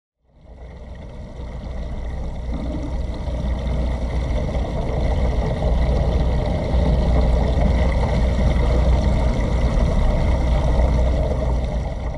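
Steady rushing water with a strong low rumble from a saltwater reef aquarium's circulation, heard through a camera submerged in the tank, with a faint steady high tone over it. It fades in over the first two seconds.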